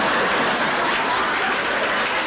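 Audience laughing and applauding, a steady wash of crowd noise.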